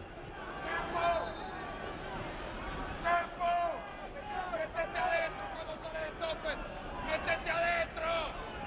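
A football coach shouting from the touchline in several short, high-pitched yelled phrases, over a steady background of stadium noise.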